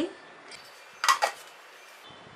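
A brief clatter of stainless-steel kitchenware, a few quick clinks close together about a second in, over quiet room tone.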